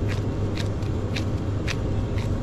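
Gloved hands patting and pressing raw sausage meat around a boiled egg to shape a scotch egg, making short soft slaps about twice a second over a steady low hum.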